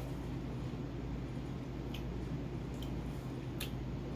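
Faint wet mouth clicks and lip smacks from chewing and tasting a thick smoothie, three short ones about two, three and three and a half seconds in, over a steady low room hum.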